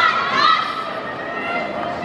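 Spectators shouting encouragement in high-pitched voices over crowd chatter; a long shout fades out in the first half second.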